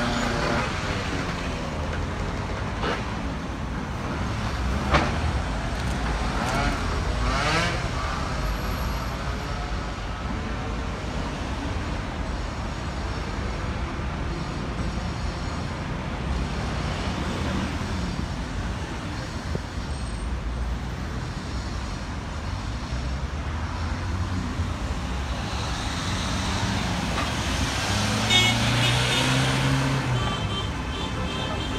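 Road traffic: cars driving past close by, a steady engine and tyre noise, with vehicles going past about five and seven seconds in and another near the end.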